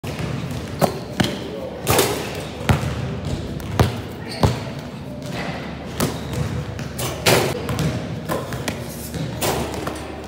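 Basketball bouncing on a hardwood gym floor: about nine sharp, irregularly spaced thuds as a player dribbles through a drill.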